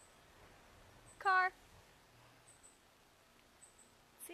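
Faint, thin high-pitched bird calls in quick pairs, recurring every second or so, which the person recording takes for a baby northern cardinal but is not sure. About a second in comes one short, loud voice-like sound.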